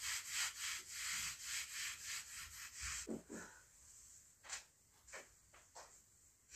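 A cleaning cloth rubbed hard over a window frame in rapid back-and-forth wiping strokes. About three seconds in the scrubbing gives way to a few slower, separate swipes and a couple of dull knocks.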